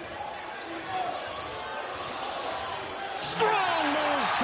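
Basketball arena game sound: crowd noise with a ball being dribbled on the hardwood during a drive to the basket. About three seconds in it rises into a loud crowd cheer and shouting as the player dunks.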